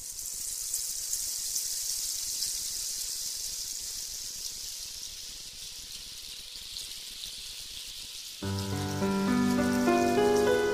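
A steady, high rain-like hiss that fades in at the start, then music with sustained keyboard notes enters about eight and a half seconds in and plays over it.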